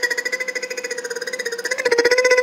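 A steady mid-pitched buzzing tone, pulsing rapidly about twenty times a second, dipping slightly in the middle and swelling again near the end.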